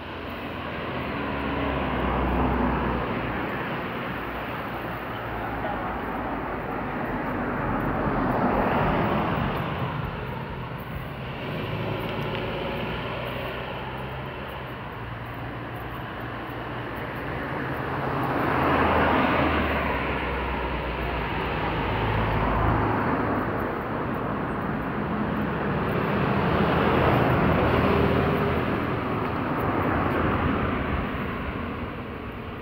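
Road traffic: about five cars passing one after another, each swelling up and fading away over a few seconds.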